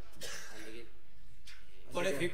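A man speaking in short phrases, with a pause of about a second in the middle.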